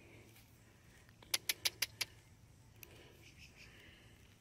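A quick run of five sharp clicks about a second and a half in, then a single fainter click a second later, over faint outdoor background.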